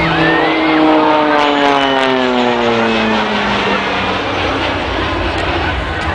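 Embraer T-27 Tucano turboprop flying past, its propeller note falling steadily in pitch over about four seconds as it passes.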